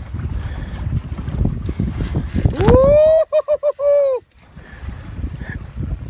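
Wind buffeting the microphone over boat and water noise. About three seconds in, a loud tone rises and then holds for about a second and a half, wavering near its end, before it cuts off abruptly.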